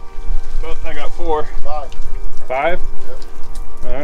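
People's voices talking and calling out over a steady low rumble.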